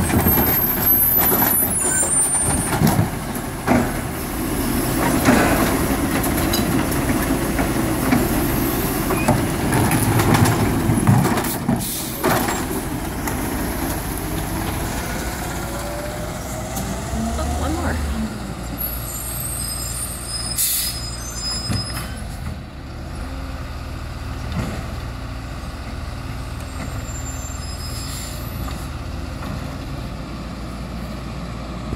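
Labrie automated side-loader garbage truck: its diesel engine and hydraulic arm working, with clunks, as the cart is set back down, and an air-brake hiss. Then the engine revs up as the truck pulls away and fades off.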